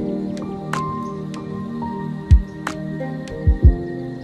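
Lo-fi hip hop instrumental beat: held chords under a slow drum pattern of deep kick thumps, one about two seconds in and two close together near the end, with sharp snare-like hits between them.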